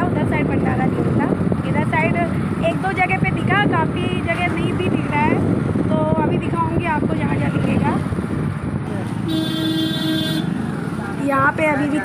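Street traffic noise with a vehicle horn giving one steady honk of about a second, about nine seconds in.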